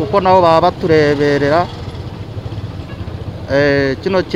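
A man speaking in short phrases over steady low engine noise from nearby motorcycle traffic; the engine noise stands alone for about two seconds in the middle, between his phrases.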